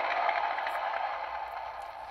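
Steady hiss from a Lionel Custom Series 2398 toy diesel locomotive's sound-system speaker, fading away gradually as its shutdown sequence ends.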